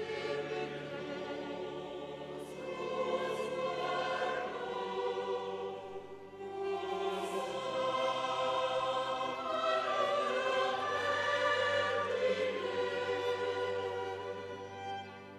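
Mixed choir singing sustained sacred music with a chamber string orchestra accompanying. The choir comes in at the very start and sings two long phrases, with a short breath just past the middle.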